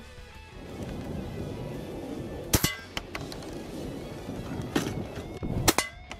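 Shotgun slugs striking an AR500 steel armour plate, each hit a sharp crack with a brief metallic ring. The strikes come about two and a half seconds in, near five seconds, and a double just before the end. The plate stops the slugs without being pierced.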